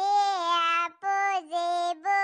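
A high-pitched, cartoon-style woman's voice singing in long held notes: a phrase of about a second, a short break, then another held phrase.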